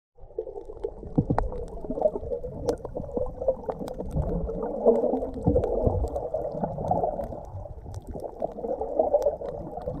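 Underwater sound picked up by a camera in a waterproof housing: a muffled, rumbling wash of moving water with many scattered sharp clicks and knocks.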